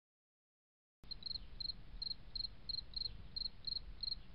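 Cricket-like insect chirping: short high chirps about three a second, each a quick run of pulses, over a faint low rumble. It starts abruptly about a second in.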